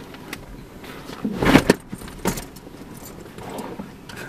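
Handling noise inside a car: rustling and jingling as small objects are handled, loudest in a burst about a second and a half in, with a shorter one just after.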